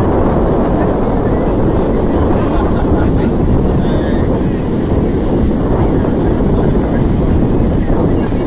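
Steady wind buffeting the microphone, with the voices of a crowded beach beneath it.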